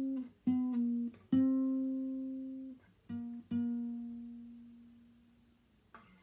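Acoustic guitar played solo: about six plucked notes at much the same pitch, each ringing and fading. The last note rings out and dies away slowly near the end.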